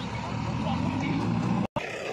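A JCB backhoe loader's diesel engine running with a steady low rumble, under people's voices, cut off by a brief gap of silence near the end.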